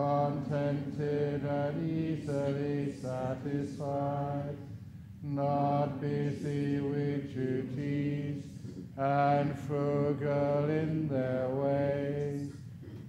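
A Buddhist monk's deep voice chanting Pāli verses on a near-level recitation tone, syllable by syllable, with two short pauses for breath.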